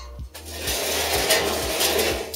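Welded sheet-steel chassis section being slid and turned over on a workbench: a continuous scraping of steel on the bench, starting about a third of a second in.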